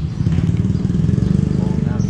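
A small vehicle engine idling close by, a steady low pulsing rumble.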